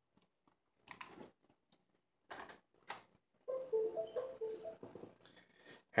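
Soft handling noises as cables are moved by hand: a few light clicks and rustles. In the second half comes a faint pitched hum whose notes shift a few times.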